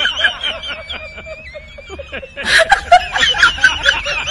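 High-pitched laughter, in quick repeated bursts, with a louder outburst of laughter about two and a half seconds in.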